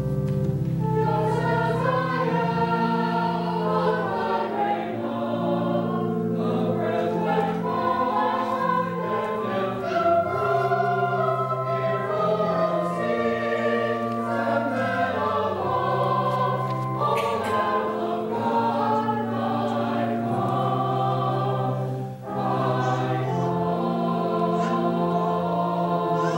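A group of voices singing a slow hymn-like melody together, with a sustained organ accompaniment holding each chord. There is a short break between phrases near the end.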